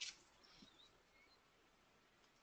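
A single computer mouse click at the start, then near silence with a few faint high chirps.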